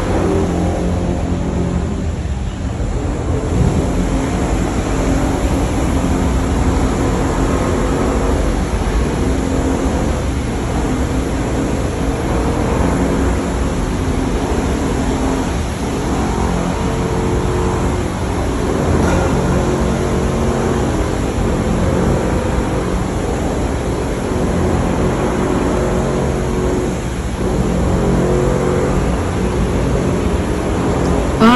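Loud, steady machinery noise: a low rumble with a droning hum, the sound of ongoing renovation work.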